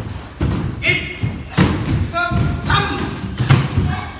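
Barefoot feet thudding on a wooden dojo floor as a line of karate students steps through kicking drills. Short shouted calls rise over the thuds several times.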